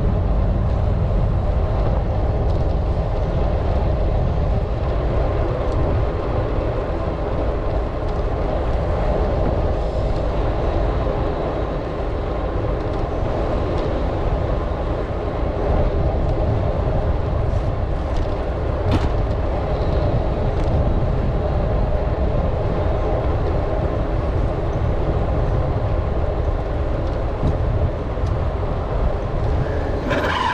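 Steady rumble of wind and motion noise buffeting an action camera's microphone while moving along, with a faint continuous hum underneath.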